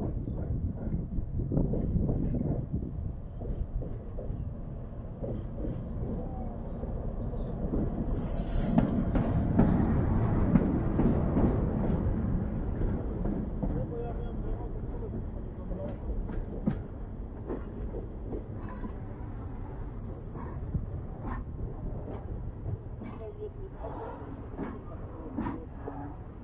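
SM31 diesel shunting locomotive running light past on rails, its diesel engine rumbling. The sound builds as it approaches, is loudest about ten seconds in as it passes, then slowly fades as it moves away.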